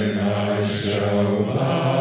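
Men's choir singing a sustained chord, moving to a new chord about one and a half seconds in.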